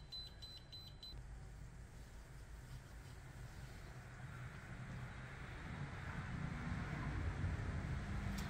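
Water-cooled PC test bench running with a low hum and a hiss that grows steadily louder over the last few seconds as a CPU benchmark loads the processor. A high steady tone with quick regular ticks cuts off about a second in.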